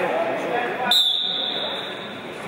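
A single high-pitched signal tone starts abruptly about a second in and holds steady for about a second, over voices in a large hall.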